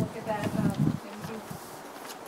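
Quiet speech in a meeting room, fading about a second in, with a faint buzzy edge.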